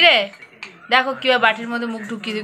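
Steel water cup clinking against its wire cage as an Alexandrine parakeet dips its head in to bathe, with a few sharp metallic clicks.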